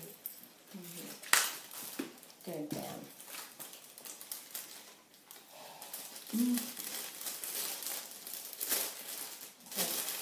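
Clear plastic and cellophane gift-basket bags crinkling and rustling as they are handled, with a sharp crackle about a second and a half in as the loudest moment, and brief murmured voices.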